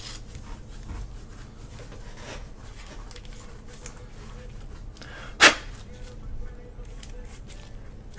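Gloved hands slipping a trading card into a clear plastic card holder: soft plastic-on-plastic rubbing and rustling, with one sharp click about five and a half seconds in.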